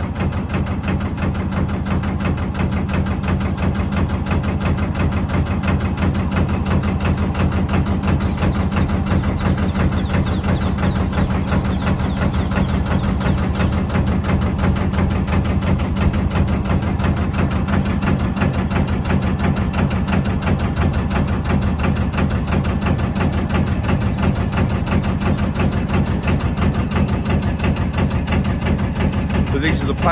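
Narrowboat's inboard diesel engine running steadily at low cruising revs, a constant low, even pulse throughout.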